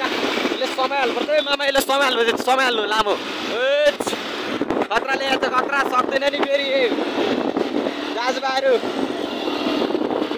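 A man's voice talking almost continuously over steady wind and traffic noise from riding along a road.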